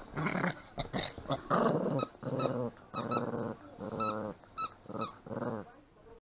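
Small dog growling in play while tugging and shaking a toy: a string of short growls, each about half a second, with brief gaps between them. This is mock ferocity, not aggression.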